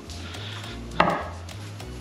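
A metal food can set down on a wooden cutting board: one sharp knock about halfway through.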